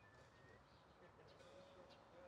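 Near silence: faint distant chatter of a small group of people, with a few brief bird chirps.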